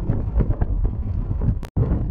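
Wind rushing over the microphone with low road rumble from a car driving along a highway. The noise drops out to silence for an instant near the end, then carries on.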